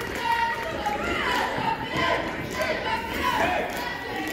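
Many voices of spectators and players talking over one another in a gymnasium during a stoppage in a basketball game, with no single voice standing out.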